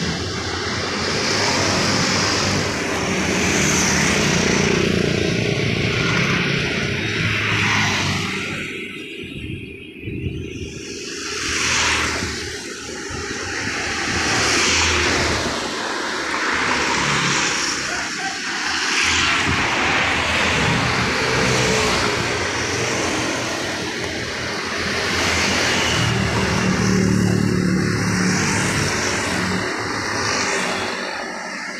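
Road traffic of motorcycles and scooters passing close by one after another, each engine swelling and fading as it goes past, with the odd car among them. A short lull comes about a third of the way through before the next bikes arrive.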